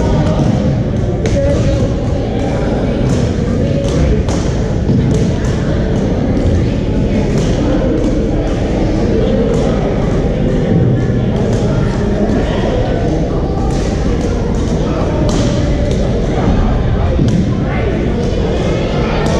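Badminton rackets striking shuttlecocks on several courts, many short sharp hits at irregular intervals, over a steady murmur of players' voices echoing in a large sports hall.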